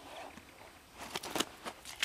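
Large common carp moving on a wet unhooking mat as it is handled: about a second in, a quick run of sharp wet slaps and crackles.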